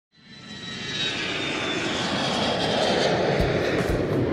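Airplane engine sound fading in and growing louder: a rushing noise with a high whine that slowly falls in pitch. Deep beats start near the end.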